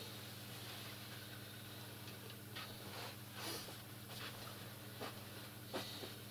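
Quiet room tone with a steady low electrical hum, broken by a few faint short clicks and rustles, the sharpest one just before the end.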